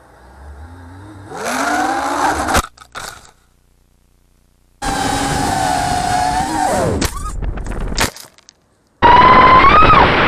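Brushless motors of FPV racing quadcopters whining, the pitch rising and falling with the throttle, in a string of short flights. Each flight cuts off suddenly with a sharp knock or clatter from the crash, and a second or so of near silence falls between the first two.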